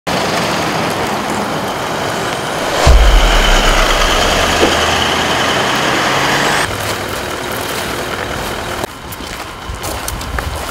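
Road vehicles driving past close by, engine and tyre noise, with a louder vehicle coming in suddenly about three seconds in and running for a few seconds before the sound drops.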